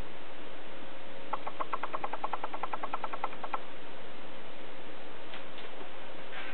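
Steady room hiss with a faint hum. About a second in comes a rapid, even run of ticking clicks, about nine a second, lasting some two seconds before it stops.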